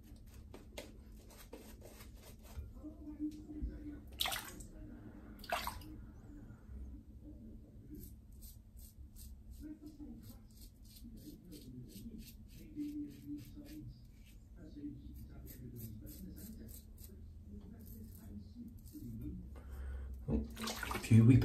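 A double-edge safety razor with a Gillette super thin blade scraping through stubble on the neck in a run of short, quick strokes.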